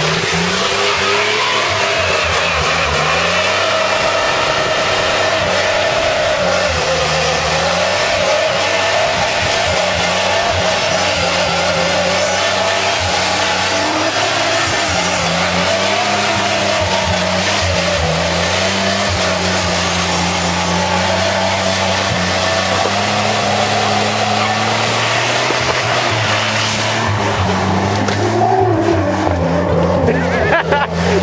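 A 1992 Dodge Dakota pickup's engine held at high revs in a long burnout, its pitch rising and falling as the throttle is worked, over the steady hiss of the rear tire spinning against the ground. The tire noise thins out near the end.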